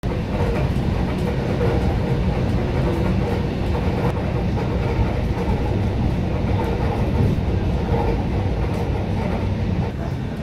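Steady rumble of a passenger train running along the track, heard from inside the carriage.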